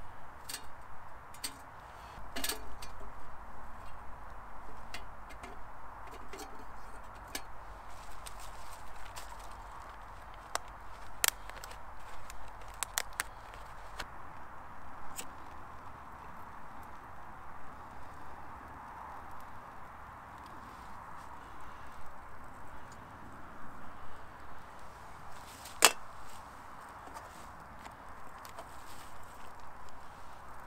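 Small titanium wood-burning firebox stove being loaded with twigs and lit: scattered sharp snaps and clicks of sticks being broken and dropped into it, the loudest single snap near the end, over a steady hiss.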